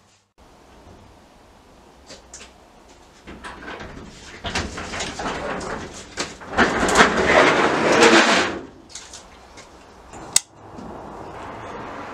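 Up-and-over garage door being opened: a rough sliding rumble builds over a few seconds, is loudest about seven to eight seconds in, then dies away. A single sharp click follows about ten seconds in.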